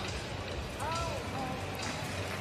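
Steady arena ambience of a short-track speed skating race: an even crowd-and-rink noise, with a brief faint call about a second in.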